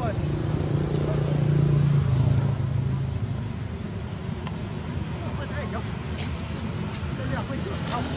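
A steady low motor hum, like a passing engine, fades after about three seconds into outdoor background noise. A few short, high squeaks with gliding pitch come later on.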